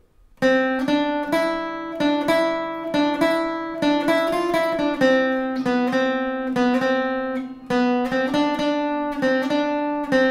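Cort acoustic guitar playing a melodic lick slowly, one picked note at a time, each note left ringing into the next. It starts about half a second in.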